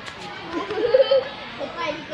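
Indistinct voices with children's voices among them, one high voice rising and falling loudest from about half a second to just past one second in.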